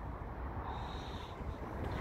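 Low steady background rumble, with a faint high whine briefly about halfway through.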